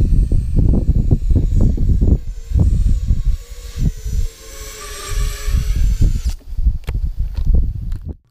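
Small FPV quadcopter's motors whining in flight: a pitched tone that swells in the middle and cuts off suddenly about six seconds in. Heavy wind buffeting on the microphone runs underneath.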